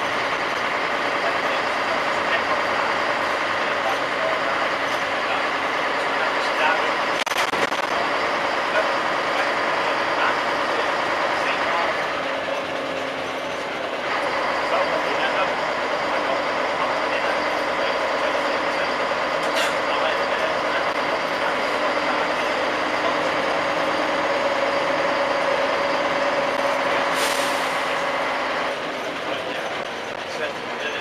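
Inside a moving single-decker bus: steady engine and road noise with a whine that rises slightly, easing off briefly midway. Near the end comes a short air hiss from the brakes as the bus slows to stop.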